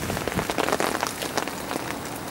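Heavy rain falling on a fishing umbrella canopy overhead: a dense, steady patter of countless drop hits.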